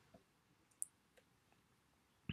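Near silence with a few faint computer keyboard clicks, the clearest a single short click just under a second in.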